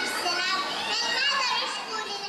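A young girl speaking through a microphone, with other children's voices overlapping hers.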